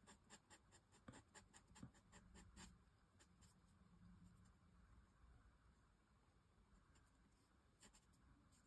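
Faint scratching of a Promarker alcohol marker's nib stroking on paper: a run of quick short strokes in the first few seconds, then fainter.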